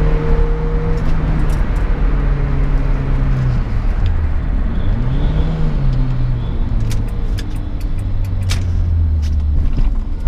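Renault Clio 1.6 8V four-cylinder engine heard from inside the cabin, driven through gear changes. Its pitch holds steady, drops about three and a half seconds in, rises and falls briefly around five to six seconds, then settles to a lower steady note. A few sharp clicks come near the end.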